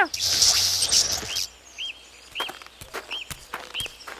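A loud hissing rush of noise for about the first second and a half, then a bird's short chirps repeating roughly every half second over quiet outdoor ambience, with scattered light clicks.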